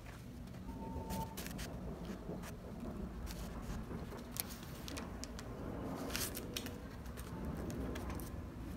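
Quiet handling noises over a low steady hum: scattered light clicks and a brief rustle around six seconds in, as parchment paper is put in place against the glued wood edge.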